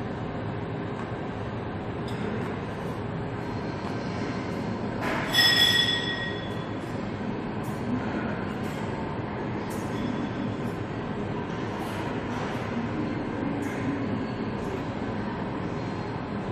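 Steady rumbling background noise of a gym, with faint scattered clicks. About five seconds in comes a short, high-pitched squeal, the loudest sound.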